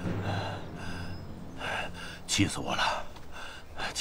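An elderly man panting and gasping heavily in fury, about four hard breaths with a short voiced groan partway through.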